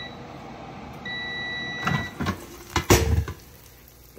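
Gourmia digital air fryer giving one long, steady end-of-cycle beep about a second in, signalling that the cooking time is up. It is followed by a few clunks as the basket is pulled out, the loudest near the end.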